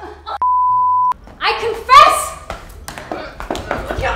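A single steady censor bleep lasting under a second, with the rest of the sound cut out around it, covering a swear word. After it comes a woman's loud, high-pitched crying out and shouting.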